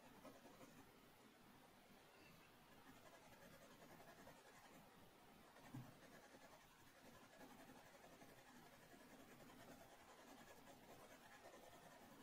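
Faint scratching of a pencil shading on drawing paper, with one soft knock about halfway through.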